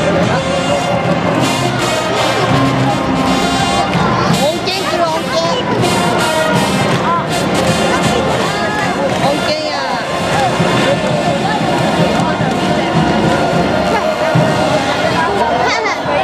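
Parade music with brass in it, mixed with a crowd's voices and chatter, at a steady level.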